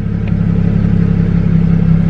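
BMW 335i's N54 twin-turbo inline-six idling steadily through catless downpipes, heard from inside the cabin.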